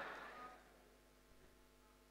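The tail of an audience's answering shout of "hi" fading out in the first half second, then near silence.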